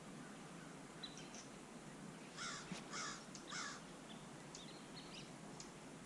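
A crow cawing in the background, three harsh caws in quick succession about halfway through, with faint chirps of smaller birds around them.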